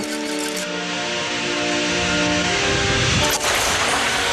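Cartoon blast sound effect of a radioactive-waste tank venting: a long rushing hiss and rumble, with a sharp hit a little past three seconds in. Held orchestral chords play under it and fade out about halfway through.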